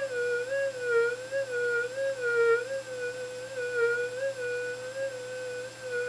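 Modified Minelab SD2200 V2 metal detector's audio: a steady hum near 500 Hz with a higher overtone, wavering up and down in pitch and level again and again as a small gold target is passed over the coil.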